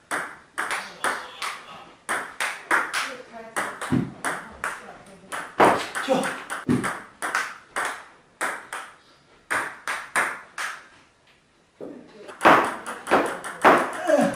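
Table tennis rally on a Butterfly table: the ball ticks back and forth off paddles and tabletop in a quick, steady rhythm. The play breaks off briefly about eleven seconds in, then starts again.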